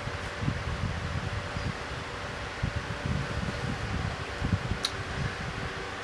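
Soft rubbing and light bumps of a hand colouring with a felt-tip marker on a colouring-book page, over a steady low hum, with one short click about five seconds in.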